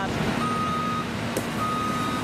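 Tow truck's reversing alarm beeping, two long beeps a little over a second apart, over a steady engine hum.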